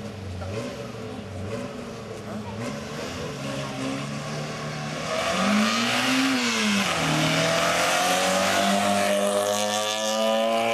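Race car engine revving at the start line, then launching about five seconds in: the engine pitch rises and falls, drops at a gear change, and climbs steadily again as the car accelerates away up the road.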